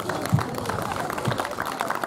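Audience applauding, with scattered voices mixed in.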